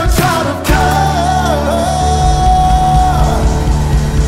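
Live worship band playing, with drums and keyboard under a male lead singer. He sings a wavering line, then holds one long note for about two seconds.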